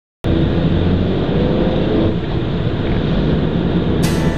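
Steady road and engine noise inside a moving car's cabin, starting abruptly about a quarter second in.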